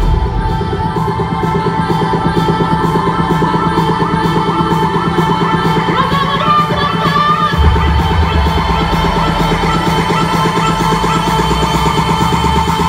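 Future house club music played loud over a sound system, in a breakdown with held synth chords and the deep bass dropped out; the bass comes back in about two-thirds of the way through. Just before that, a voice yells briefly into a microphone over the music.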